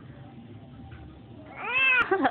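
Low room noise, then near the end one short high-pitched cry that rises and falls in pitch.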